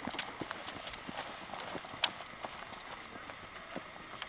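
Footsteps on sand, irregular soft taps that fade slightly as the walkers move away, with one sharper click about halfway through.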